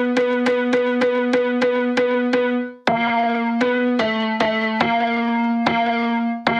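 Repeated piano notes, about three a second, played through the BeepStreet Combustor time-bending resonator effect, which holds a steady resonant drone under them. The pattern restarts about three seconds in, and the drone moves to a new pitch about a second later.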